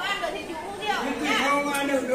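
Several people talking over one another, with no other sound standing out.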